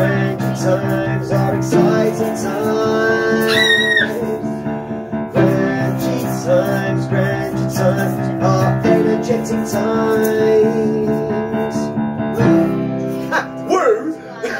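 Upright piano playing held, repeated chords that change about every three and a half seconds, with voices singing along over them.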